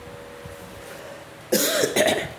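A man coughs loudly once, about one and a half seconds in, after a quiet stretch with a faint steady hum.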